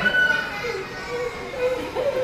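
Audience in a hall laughing and chattering, children's voices among them.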